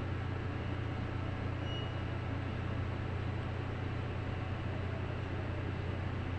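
Steady low drone of a supply boat's machinery and ventilation heard on the bridge, an unbroken hum with a rushing hiss over it.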